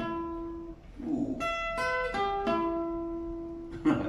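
Acoustic guitar played with a pick: single picked notes, then a quick run of notes and one long note left ringing, with a sharp strike of the strings near the end as the playing stops.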